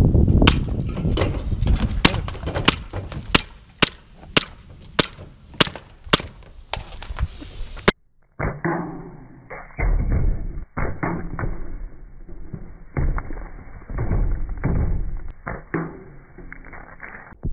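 Gas blowback airsoft Glock 17 firing a quick string of sharp shots, about three a second. About halfway through, the sound turns duller as BBs hit a stack of soda cans, with thuds and cans clattering.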